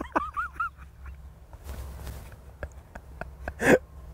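A man laughing, a few short rising-and-falling notes in the first moment, then a low steady rumble with a short breathy burst near the end.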